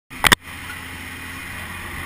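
Steady drone of a skydiving aircraft's engine heard inside the cabin, with a brief loud knock right at the start.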